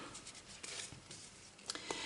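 Faint rustle of a tarot card deck being handled on a wooden table, with two light taps near the end.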